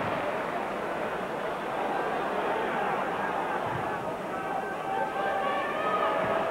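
Football stadium crowd noise, a steady din of thousands of voices. From about four seconds in, part of the crowd holds a sustained chant or song above it.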